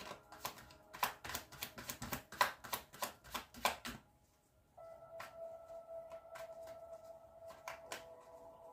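A tarot deck being shuffled by hand: a quick run of card clicks and flicks for about four seconds. After a short pause, soft music of a steady held tone comes in, with a few more card clicks over it.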